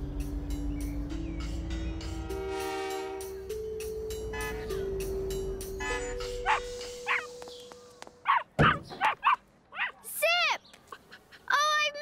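Soft background music score with a slow melody of held notes, fading out about two thirds of the way in. A cartoon puppy takes over with short, excited yips and whines, in quick groups near the end.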